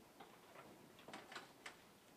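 Near silence, with a few faint clicks and light handling of paper sheets about a second in.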